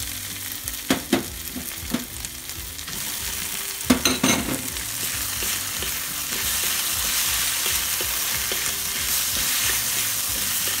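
Diced fishcake, tofu and egg stir-frying in chilli paste in a hot pan, sizzling steadily as a wooden spatula turns them. The spatula knocks against the pan a few times, around one, two and four seconds in, and the sizzle grows louder from about six seconds.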